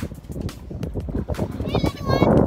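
Uneven low rumble and knocks on the microphone, like wind buffeting and handling, with a short high, wavering call near the end.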